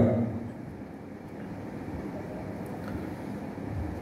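Steady low background rumble with a faint hiss under a pause in speech, the end of a man's word trailing off at the very start.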